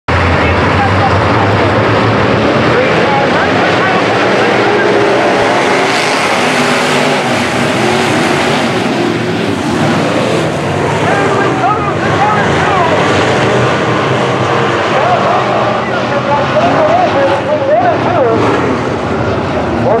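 A field of IMCA sport modified dirt-track race cars with V8 engines running hard, a loud, steady engine drone. Voices rise over it in the second half.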